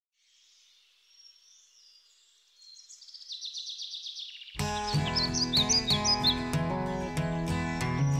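Faint bird chirps, then a fast high trill that grows louder over the first few seconds. About four and a half seconds in, music starts abruptly and takes over as the loudest sound, with more high chirps above it.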